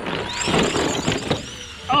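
Brushed electric motor of an Arrma Fury 2WD RC short course truck driving up a dirt slope: a faint high motor whine that rises and falls with the throttle over the noise of the tyres on loose dirt.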